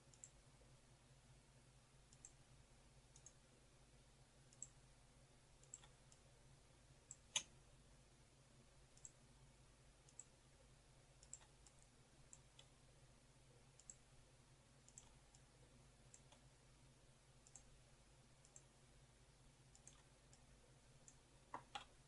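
Faint computer mouse button clicks at irregular intervals, roughly one a second, with one louder click about seven seconds in: anchor points being placed one by one for a polygonal lasso selection.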